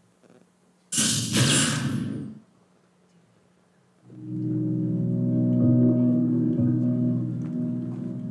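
A short burst of noise about a second in, lasting about a second and a half, as a film studio's logo plays. From about four seconds in, ambient instrumental music of sustained chords begins, the opening of a documentary's soundtrack.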